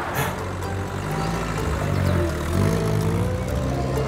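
Jeep engine running as the vehicle drives off, rising in pitch a little past two seconds in, under background music.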